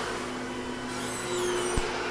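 A Makita trim router on a CNC machine spinning at speed setting 2.5 with a steady hum, over the hiss of a shop vacuum pulling dust collection. About a second in there is a brief high descending squeak, and a click comes near the end, as the enclosure's clear door is opened.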